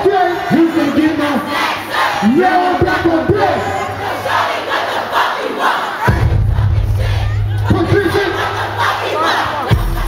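Concert crowd yelling and shouting loudly, with short hoarse shouts rising and falling in pitch. About six seconds in, a deep, steady bass tone from the sound system comes in and holds under the crowd noise.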